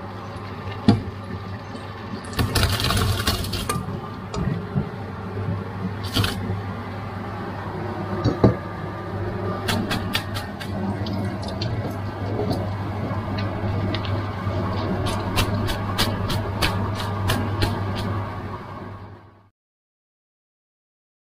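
Blanched tomatoes and their hot cooking water poured from a stainless steel pot into a plastic colander in a steel sink, the liquid splashing for about a second. Then the colander is handled and shaken over the sink in a run of light clicks and taps, over a steady low hum; all sound cuts off near the end.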